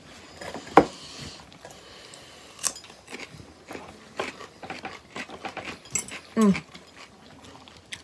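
A crisp bite into a pickled cucumber about a second in, then close-up chewing with a few smaller crunches and mouth clicks.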